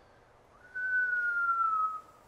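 Chalk squeaking on a chalkboard as a long straight line is drawn: one thin, high squeal starting about half a second in and sinking slightly in pitch for a little over a second.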